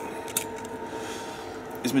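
A single sharp plastic click as the electronics enclosure and the board inside it are handled, over a steady background hum.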